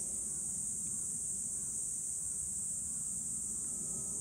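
Steady, high-pitched chorus of insects droning without a break.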